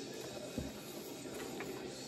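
Steady low hiss of room tone with one soft thump about half a second in, as a record sleeve is set down on a desk.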